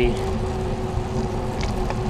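Steady riding noise from a bicycle rolling on wet pavement: tyre hiss and wind on the handlebar-mounted camera, with a faint steady hum underneath.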